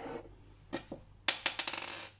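A small plastic die rolled on a hard tabletop. A couple of light taps come first, then a quick rattle of clicks as it tumbles and settles, about a second and a half in.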